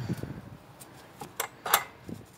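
Handling noise at an RV's propane tank compartment: a low knock right at the start, then a few sharp clicks, the loudest about three-quarters of the way through.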